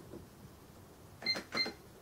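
Sam4S NR-510R cash register keys pressed twice in quick succession, each press giving a short high beep, about a third of a second apart, as letters of a PLU button description are keyed in. Faint key clicks come at the start.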